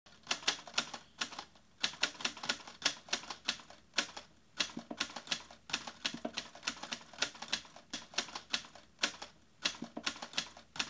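A fairly quiet, irregular run of sharp clicks, about three or four a second, like keys being struck in typing.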